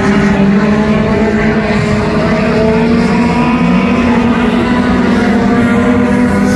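Four-cylinder front-wheel-drive dirt-track race car engines running hard, their pitch rising and falling a little with the throttle.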